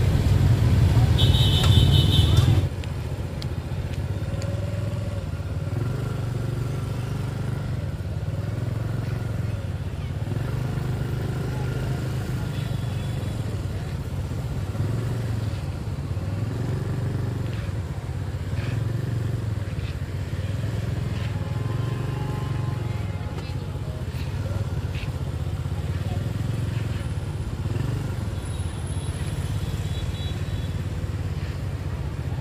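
Busy street ambience dominated by the low running of motorbike and scooter engines, swelling and fading every second or two, with voices and faint music in the background. A loud rush of noise fills the first two or three seconds, then cuts off.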